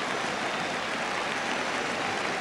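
Football stadium crowd: steady, even noise from a large crowd on the terraces, with no single call standing out.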